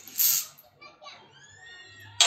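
Children's voices in the background, like children playing. A short, loud burst of noise comes near the start.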